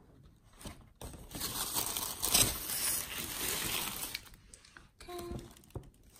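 Tissue paper crinkling and rustling as it is pulled back from a boxed item inside a paper shopping bag. It starts about a second in, is loudest in the middle and dies away after a few seconds.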